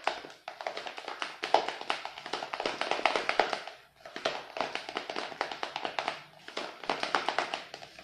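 Pink-tinted whipped cream being stirred by hand in a bowl: a fast run of clicking taps as the utensil knocks and scrapes the bowl, with short breaks about half a second and four seconds in. The colouring is being mixed through to match the earlier pink.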